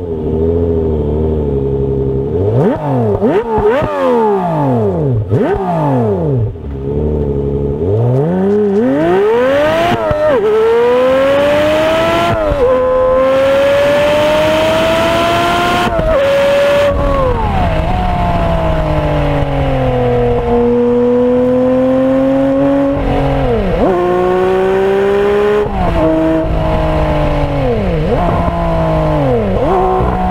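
Lotus Evora's 3.5-litre V6 through a sports-tuned exhaust, heard from inside the cabin and sped up, which raises its pitch. For the first few seconds it revs up and down in quick sweeps. After that it pulls through the gears of the manual gearbox, the pitch climbing and then dropping suddenly at each shift.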